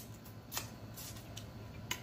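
Close-miked mouth sounds of someone chewing a bite of seafood stir fry: quiet chewing with three short, wet mouth clicks and smacks.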